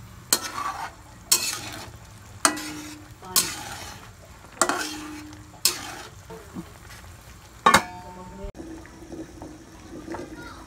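A spatula stirring and scraping chicken adobo around a wok in about six strokes roughly a second apart, then a sharp clatter against the pan with a brief ring, over the simmering sauce.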